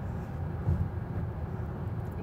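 Steady low road rumble inside the cabin of a moving Lucid Air Dream Edition electric sedan.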